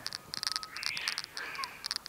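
A small animal chirping in a rapid run of short, evenly repeated high-pitched calls, with a soft breathy hiss in the middle.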